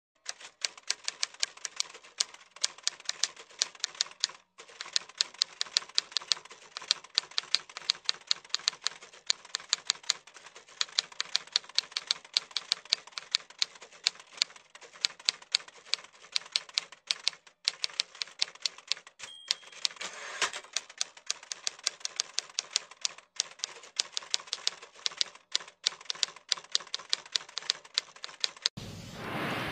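Typewriter sound effect: a fast, uneven run of key strikes, pausing briefly now and then. About two-thirds of the way through comes a short ping and a louder rush, like the bell and carriage return at the end of a line.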